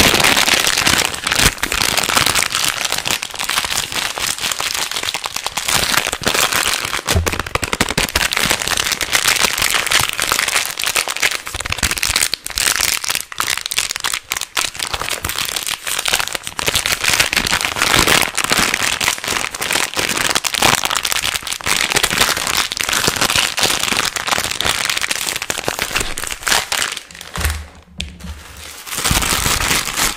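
Fast, aggressive crinkling of a plastic wrapper held right against the microphone, a dense, continuous crackle with a short lull just before the end.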